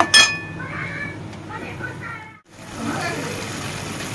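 A metal spatula clinks once against a metal wok at the very start, a short bright ring, then keeps stirring and scraping through the simmering fish and potato curry. The sound cuts out for a moment just past halfway.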